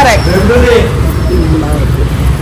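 People's voices talking, untranscribed, over a steady low rumble.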